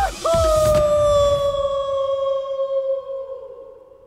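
A man's long yell held on one note as he falls from a cliff, its pitch sagging slightly as it fades away over about three seconds and trails off near the end.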